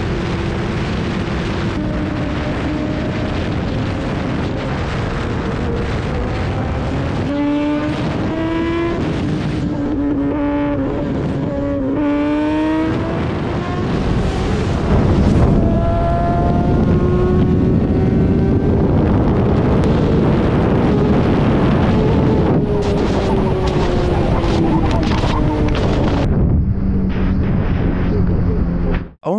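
Sportbike engine running hard at highway speed with heavy wind noise on the helmet microphone; the engine pitch climbs and drops back several times in the middle as the bike accelerates through the gears.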